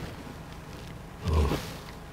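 A man's short, low grunt from the throat about a second in, over quiet room tone.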